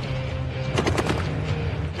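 A short burst of rapid gunfire, several shots in quick succession about a second in, over a dramatic music bed with a steady low rumble.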